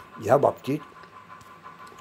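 A man's voice speaking a few words, then a pause of about a second with only a faint steady background hum.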